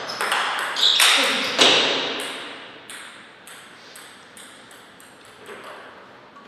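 Table tennis ball struck by paddles and bouncing on the table, with loud sharp hits in the first two seconds as the rally ends. The ball then bounces on its own, faster and fainter, as it comes to rest, with the hall's echo after each hit.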